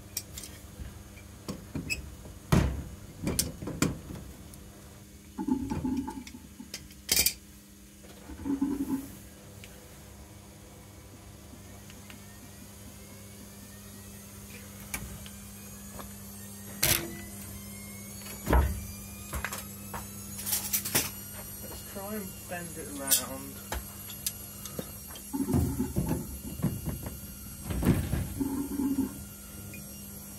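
Scattered sharp clicks and knocks from hands handling brass plumbing fittings on copper pipe, over a steady low hum.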